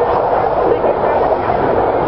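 Steady roar of jet engines from a four-jet formation in flight.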